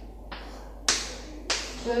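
Chalk tapping against a chalkboard while writing: three short, sharp knocks, a faint one early and two louder ones about a second and a second and a half in.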